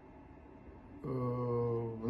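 Quiet room tone, then about a second in a man's voice holds one low, steady drawn-out vowel for about a second: a hesitation sound, an 'eee' or hum, just before he starts talking.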